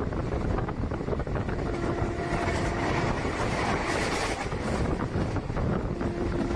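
Passenger train running at speed, heard from inside a carriage: a steady rumble with the rattle and clatter of wheels on the rails. A faint steady hum joins in around two seconds in.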